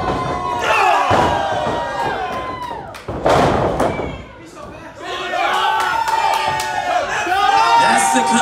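Wrestling crowd shouting and yelling, with a loud slam about three seconds in as a wrestler is thrown onto the ring mat. The shouting picks up again after the slam.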